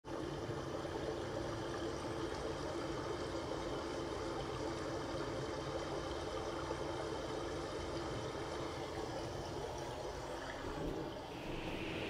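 Steady trickling, running water.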